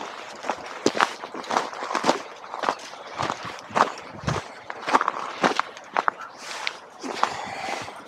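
Footsteps on a gravel path at a slow walking pace, about two steps a second.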